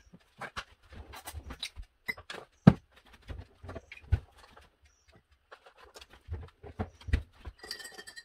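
Irregular knocks and clinks of cups and kitchen items being handled while coffee is made, with one louder knock about a third of the way in. A brief ringing tone sounds just before the end.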